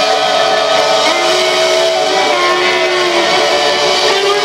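Live rock band playing loud music, with long held notes over the band.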